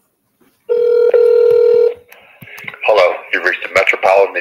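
Telephone line tone: a steady buzzing tone held for just over a second with a click partway through, then a voice starts speaking.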